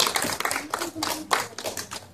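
A small group of people clapping by hand: irregular, separate claps that thin out and grow quieter toward the end.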